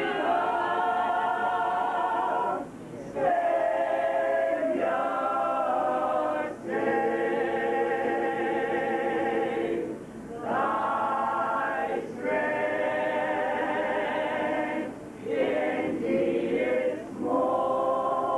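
Adult mixed-voice a cappella gospel choir, men and women, singing held chords without instruments, in phrases of a few seconds with brief gaps between them.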